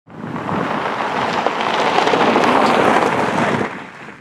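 A loud, steady rushing hiss with faint crackles, like rain or static, that comes in at once and fades away just before speech begins.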